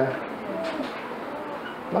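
A faint bird call, a low short cooing, heard during a pause in the speech.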